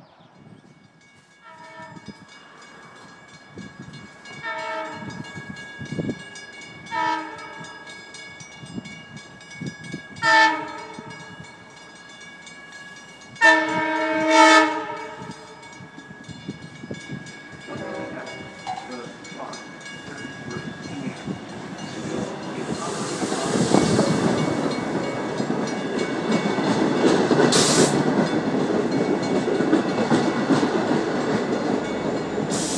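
Long Island Rail Road diesel train's horn sounding a series of blasts as it approaches, the last one the longest and loudest, about 13 seconds in. A rumble then builds as the locomotive and bilevel coaches run past close by, with a short hiss near the end.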